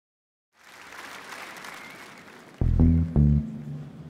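Live-concert audience applauding and cheering, then about two and a half seconds in two loud, deep bass notes about half a second apart open the song, leaving a low tone sounding.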